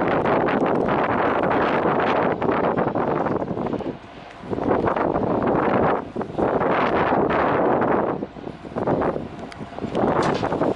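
Gusting wind noise on the microphone, dropping briefly about four seconds in and again near the end. Under it is an EMD J-26 diesel locomotive approaching while it hauls a train set through the yard.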